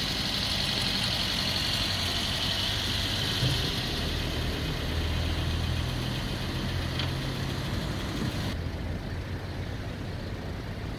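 Queued cars idling, a steady low engine hum under street traffic noise, with one short knock a few seconds in.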